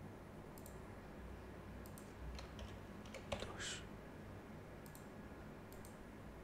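Faint, scattered keystrokes on a computer keyboard as a short entry is typed. A few clicks are spread over the seconds, with a slightly sharper click followed by a brief hiss a little past the middle.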